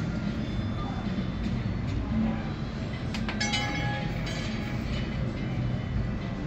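Roulette ball rolling around the track of an automated roulette wheel, a steady rumble over casino room noise. A sharp click comes about three seconds in, followed briefly by high chiming tones.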